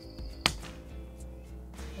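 Soft background music with sustained tones, cut through by a single sharp click about half a second in.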